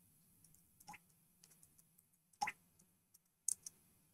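Faint, scattered clicks of keys being typed on a computer keyboard, with a few louder clicks standing out, the loudest about two and a half seconds in.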